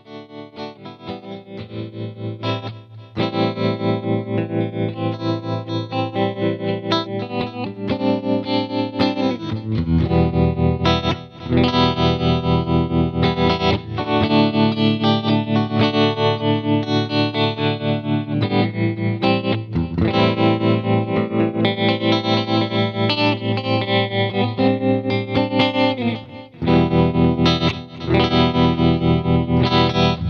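Distorted electric guitar played through a Dreadbox Treminator tremolo pedal, its volume pulsing in a fast, even rhythm. It swells in over the first few seconds and breaks briefly between phrases.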